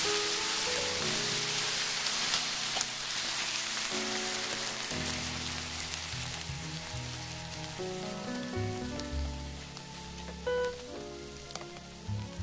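Potato pancakes sizzling in oil in a frying pan as sauce is spooned over them, the sizzle slowly dying down. Background music plays throughout.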